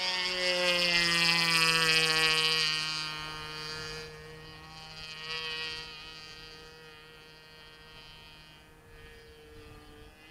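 Evolution gas (petrol) engine of a radio-controlled model airplane droning in flight. It is loudest about one to three seconds in, its pitch sagging slightly as the plane passes, then fades steadily as it flies away.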